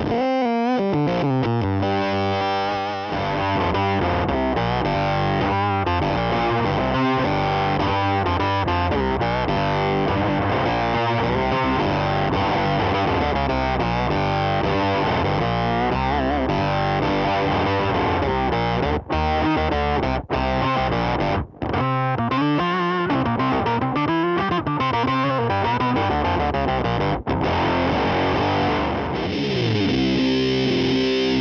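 Electric guitar played through modelled fuzz pedals on a Fender Tone Master Pro, heavily distorted, with sustained notes and riffs. The model changes partway through, from an octave fuzz to an Octobot octave effect and then to a Big Green (Big Muff-style) fuzz. A few brief gaps fall between phrases in the second half.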